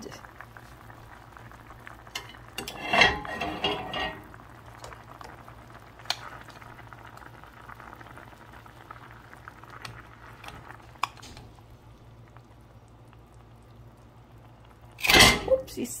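Soy braising sauce bubbling at a steady simmer in a skillet, with metal tongs clicking against the pan a few times. A louder burst about three seconds in, and a laugh near the end.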